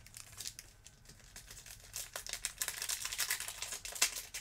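Foil trading-card pack wrapper crinkling as it is handled and torn open. The crackles are sparse at first and grow into a dense run through the second half.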